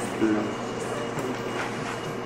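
Steady background noise of a meeting room, with a brief faint voice about a quarter second in and a faint steady hum after that.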